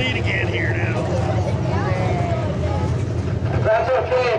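Stock car engine idling steadily, a low rumble that dips briefly near the end, with people's voices talking over it.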